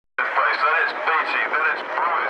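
Race commentary over a circuit's public-address loudspeakers, starting suddenly just after the start.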